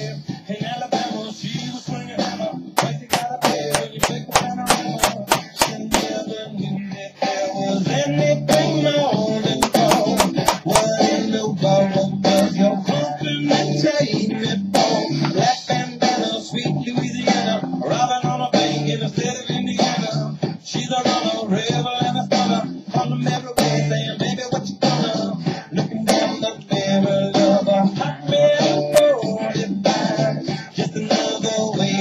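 Rock song with guitar and some singing playing as background music. A quick run of sharp taps, about four a second, sounds over it a few seconds in, with a few more around ten seconds.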